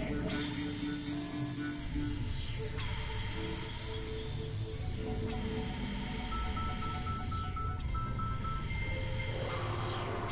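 Experimental electronic synthesizer music: a dense, noisy low rumble under held tones that change every few seconds, with a pulsing higher note in the second half and several sweeps falling in pitch.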